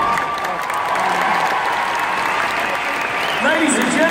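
A large arena crowd applauding, a dense even clapping, with an announcer's voice over the public-address system coming in near the end.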